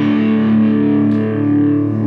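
Guitar chord left ringing in a live song's instrumental intro, its held notes sustaining while the treble slowly fades.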